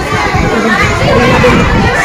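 A large group of young schoolchildren's voices chattering and calling out all at once, a dense, continuous babble of children.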